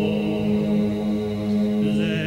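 Chant-like vocal music over a steady held drone note, with a wavering higher voice coming in near the end.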